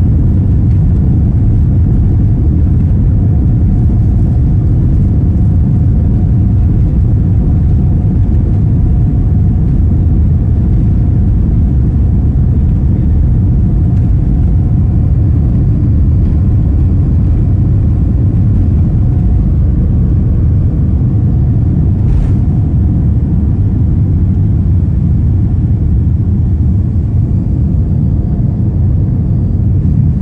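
Inside the cabin of a Boeing 787-9 on its takeoff roll: a loud, steady low rumble of the jet engines and the wheels running down the runway.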